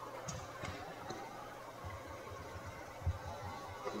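Faint steady rush of shallow creek water running over rocks, with a few soft low thumps, one a little stronger about three seconds in.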